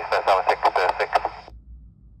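Air-traffic radio voice heard through a Yaesu FT-60 handheld's speaker, thin and band-limited, finishing a speed readback. The transmission cuts off suddenly about three-quarters of the way through, leaving only faint low hiss.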